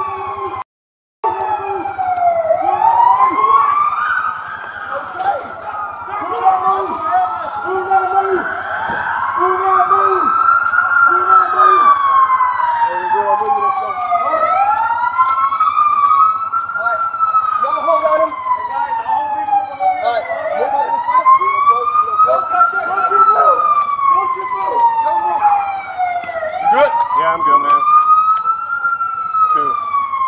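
Several emergency-vehicle sirens wailing together, each a slow rising and falling wail, overlapping and out of step with one another. The sound cuts out briefly about a second in.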